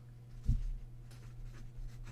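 Pen writing on paper, faint scratching strokes, with one soft knock about half a second in.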